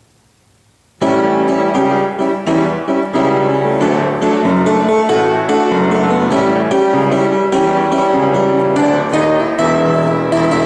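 Piano introduction to a musical-theatre song, starting suddenly about a second in with steady, rhythmic chords.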